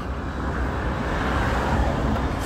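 Steady low rumbling background noise, with no distinct rhythm, tone or impact.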